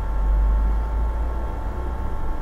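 Low rumble, loudest in the first second or so, over a steady thin electrical whine: background noise of the recording setup.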